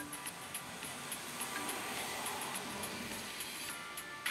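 Background music of the Instant Loto phone game with a quick high ticking, over a steady hiss.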